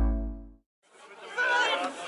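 Electronic music dying away, a brief gap of silence, then a crowd chattering with many overlapping voices.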